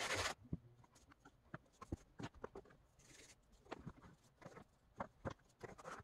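A hand brushing across a floured plastic craft mat with a short swish at the start, then faint scattered taps and knocks of dough and tools being handled on the mat, with another brief swish about three seconds in.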